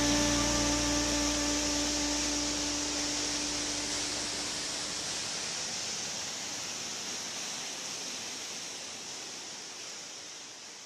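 Waterfall rushing: a steady hiss that fades out gradually. Over the first few seconds the last chord of a guitar music track rings out and dies away.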